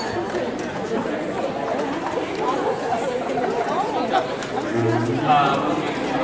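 Audience chatter: many people talking at once, no single voice standing out, with a brief low steady tone about five seconds in.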